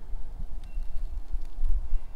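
Wind buffeting the microphone: a low, uneven rumble that rises and falls.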